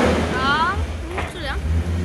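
Koenigsegg CCXR's twin-supercharged V8 idling with a steady low hum, just after a throttle blip dies away at the start.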